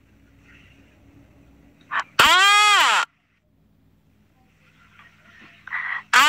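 A woman's voice making one drawn-out vocal sound, about a second long, with its pitch rising and then falling, about two seconds in; it cuts off suddenly. Before it there is only a faint low hum.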